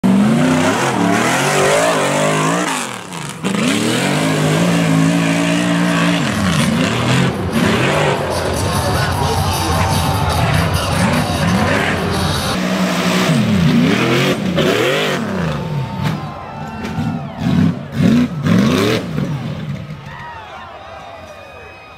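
Rock bouncer buggy engine revving hard in repeated surges, pitch rising and falling as the driver works the throttle up the climb. Near the end the engine sound falls away and a few loud knocks come as the buggy crashes down onto its side.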